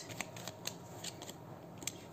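Faint handling of a tarot deck: card stock sliding and rustling in the hands, with a few small scattered clicks as cards are shuffled and one is drawn.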